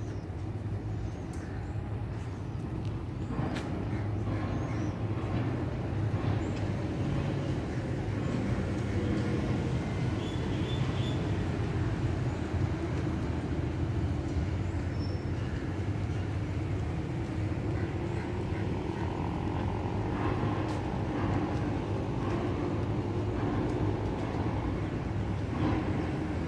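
Steady road traffic rumble from a nearby street, with vehicles going past now and then.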